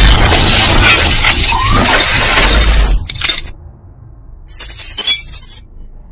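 Logo-intro sound effects of shattering glass over music: loud and dense for about three seconds, then cutting off suddenly. A short, bright glassy burst follows about a second later and fades away.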